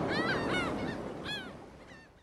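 A few short, arched seabird cries, typical of gulls, over a steady hiss of surf, the whole sound fading out.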